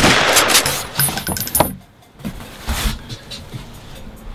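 Machine-gun fire sound effect: the end of a rapid burst that dies away in the first half-second, trailing off into scattered clicks and a brief high metallic ringing, with a few soft thumps near the three-second mark.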